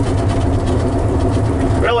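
Inside the cab of a 1941 Ford pickup resto-mod with a 350-cubic-inch V8 and automatic transmission, driving along: a steady low engine and road drone. A man's voice starts right at the end.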